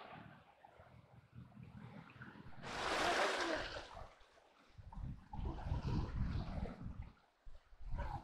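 A horse gives a loud, breathy call about three seconds in. Low thudding follows as the horses move about on the grass.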